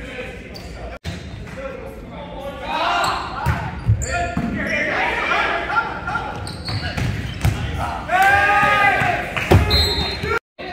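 Volleyball being struck and bouncing on a gym floor during a rally, several sharp hits, amid players and spectators talking and shouting in a gymnasium. A loud drawn-out shout rises over the rest near the end.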